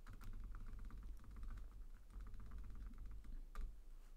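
Faint, rapid clicking from a computer's keyboard or mouse, with one sharper click near the end.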